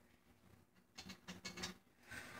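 Faint clicks and light handling noise of hands working on a snare drum's rim and hardware, a short cluster of them about a second in, over near silence.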